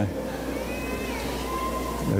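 A short electronic alarm from a membership card device: a thin higher tone, then a lower steady tone held for under a second. This is the alarm the card is said to sound when its holder has sinned.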